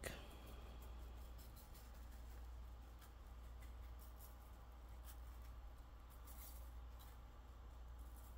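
Faint, sparse ticks and scratches of a shaker jar of granulated garlic being shaken over raw steaks in a foil pan, over a low steady hum; near silence otherwise.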